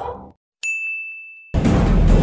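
A single high, bell-like ding, a chime sound effect, struck about half a second in and ringing on one steady note as it fades, until it is cut off abruptly about a second later.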